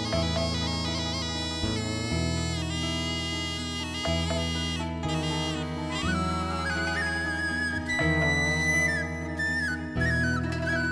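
Background music: a held low drone under high, rippling plucked notes, joined about six seconds in by a wind-instrument melody that slides between notes.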